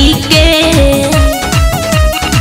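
Bhojpuri devotional song (Devi geet) music: a mostly instrumental passage with a melody of held notes stepping between pitches over a quick beat of drum strikes that drop in pitch, about four a second. The end of a sung line is heard at the very start.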